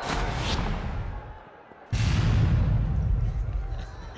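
Broadcast 'wicket' graphic sound effect. A sweeping whoosh fades away, then about two seconds in a sudden deep boom hits and slowly dies away.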